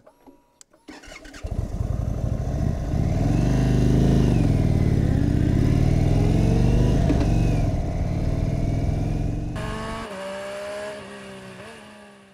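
Indian Super Chief Limited's air-cooled V-twin engine coming in about a second and a half in, revving up and back down twice, then dropping away near the end, where a few higher tones fade out.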